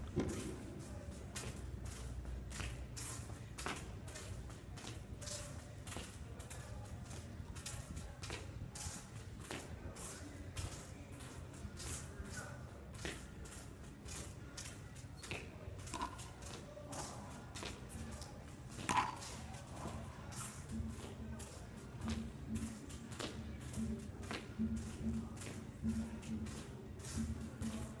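Soccer ball dribbled with rapid inside-outside touches of the feet, with shoes scuffing a concrete court floor: light, irregular taps several times a second.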